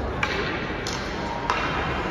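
Three sharp knocks about two-thirds of a second apart, each with a short ringing tail, over the steady din of a large ice arena.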